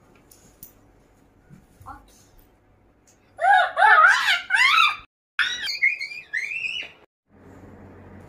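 High-pitched wavering cries, each rising and falling quickly, come in two loud runs a little past the middle. A steady rushing noise with a low hum starts near the end.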